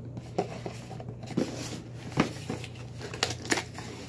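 A cardboard shipping box being pulled open by hand: crinkling and tearing of packaging with several sharp clicks and knocks, about one a second.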